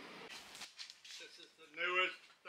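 Quiet room tone, then a man starts speaking near the end.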